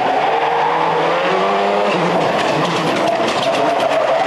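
Ford Focus WRC rally car's turbocharged four-cylinder engine driven hard on tarmac, its note holding high with a couple of small pitch steps as it accelerates through the gears.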